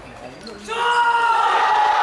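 Table tennis team bench shouting together in one long, loud, held cheer, starting about two-thirds of a second in, as their player wins the point.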